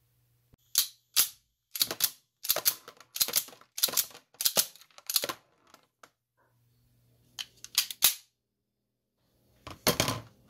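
Sig P210A pistol's steel slide racked by hand again and again, sharp metallic clacks often in quick pairs, cycling snap caps from the magazine and flinging them into a plastic tub. A pause, then a few more clacks near the end.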